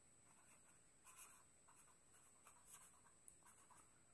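Faint scratching of a pen writing on notebook paper, in a few short strokes.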